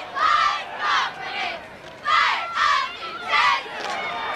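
Spectators at a football game shouting and yelling in short, high-pitched bursts, about six loud yells in a row while a play is run.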